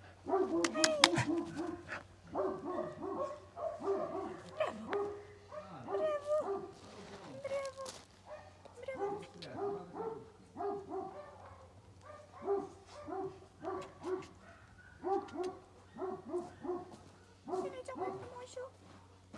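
A dog giving short, repeated barks and yips in quick clusters throughout, each call brief and at much the same pitch. A few sharp clicks come about a second in.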